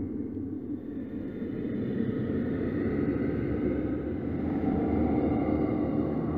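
Low, dark rumbling drone of a film soundtrack, with faint sustained high tones above it, swelling slightly after about a second.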